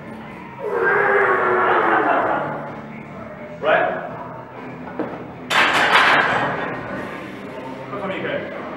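Voices shouting encouragement to a lifter during a heavy barbell squat, with a loud sustained shout in the first couple of seconds and a shorter cry near the middle. A sharp metallic clatter comes about five and a half seconds in, followed by more loud voices.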